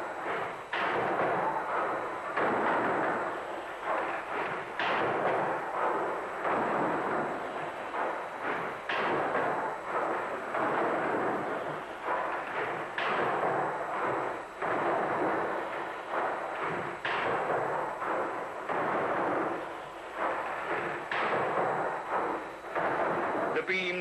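Rotative steam beam engine by James Watt & Co. running at about 11 strokes a minute: a steady mechanical rumble with a heavy knock about every four seconds.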